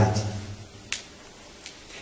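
The lecturer's voice trails off, then, in a quiet pause, one sharp click about a second in and a fainter click a little later.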